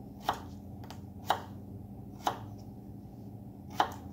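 Small kitchen knife slicing a small potato on a cutting board: four sharp knocks of the blade hitting the board, about one a second.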